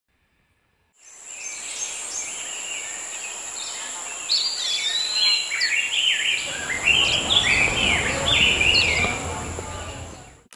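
Birds chirping and calling in many short, quick phrases that slide up and down in pitch, over a steady high whine. About six seconds in, a low murmur of people talking in the background joins.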